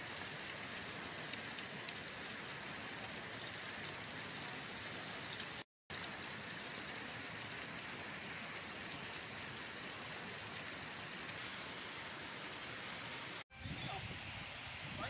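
Steady rushing of a fast, swollen river: an even hiss with no pitch, cutting out briefly about six seconds in and again near the end.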